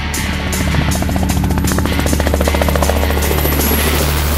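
Helicopter rotor beating in a fast, even rhythm over rock background music, with a thin high whistle near the end.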